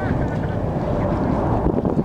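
Wind buffeting the microphone over a steady low rumble, with a few brief high chirps near the start.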